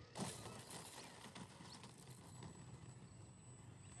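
Near silence: faint outdoor air with a few soft, scattered knocks and a thin, steady high tone that comes in about halfway through.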